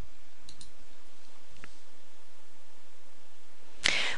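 Steady hiss of background noise in a pause between narration. A few faint clicks come about half a second in and again around a second and a half in.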